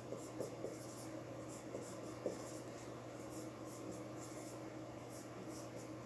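Marker pen writing on a whiteboard: faint, short scratchy strokes one after another, with light taps under a second in and at about two seconds in.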